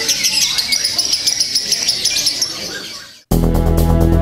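A caged lovebird giving a fast, continuous chattering trill of high chirps, which fades out about three seconds in. Loud electronic music then starts abruptly.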